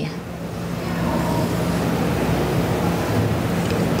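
Steady rushing background noise with a low hum underneath, growing a little louder about a second in.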